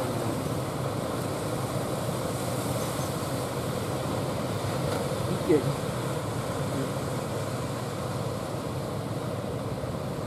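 Steady roar of surf and wind noise at the shoreline, with a faint low hum underneath and a brief human call about five and a half seconds in.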